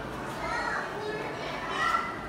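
Children's voices and play chatter, high-pitched and overlapping, in a busy room.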